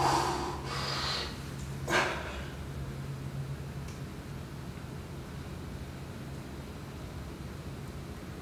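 A man's forceful breaths as he empties his lungs to pull his stomach in for a stomach vacuum, a short sharp one about two seconds in. After that the breath is held and only faint room noise is left.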